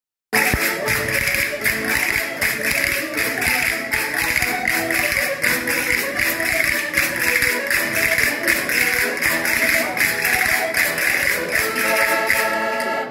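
Portuguese folk song: voices singing over a steady percussive beat of about two strokes a second, with a constant scraping hiss under it.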